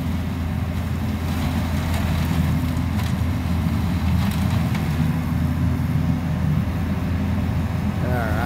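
Truck-mounted leaf vacuum running steadily, sucking a curbside leaf pile up through its large hose: a continuous low drone with a faint steady whine above it.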